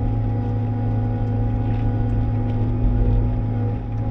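Bobcat T66 compact track loader's diesel engine running steadily under load, heard from inside the closed cab: a constant low drone with a steady whine above it.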